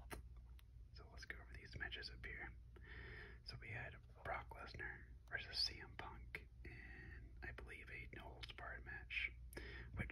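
Soft whispered speech, continuous, over a steady low hum.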